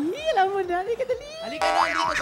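Voices talking, then about one and a half seconds in a cartoon-style sound effect that slides upward in pitch.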